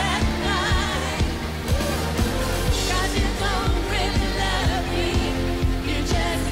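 Live pop band playing with a woman singing lead over a steady drum beat and sustained bass.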